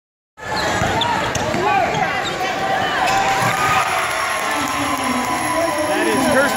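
Basketball being dribbled on a hardwood gym court under steady crowd noise with shouting voices.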